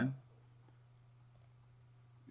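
Near silence with a low steady hum and a couple of faint computer-mouse clicks.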